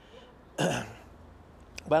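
A man clears his throat with a single short cough, about half a second in.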